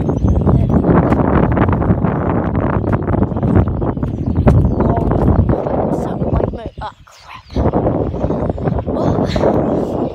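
Wind buffeting a phone microphone outdoors, a loud, rough rumble that dips out briefly about seven seconds in.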